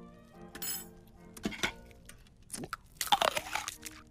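Noisy eating and slurping from a soup bowl: four short bursts, the last and loudest about three seconds in, lasting most of a second. Soft orchestral music plays underneath.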